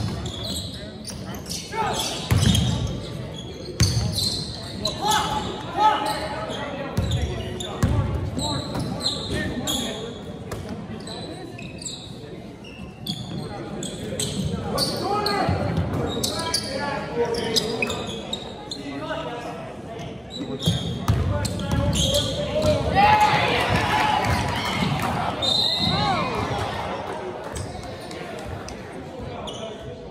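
A basketball bouncing on a hardwood gym floor during play, in repeated thuds, with players and spectators calling out, all echoing in the gymnasium.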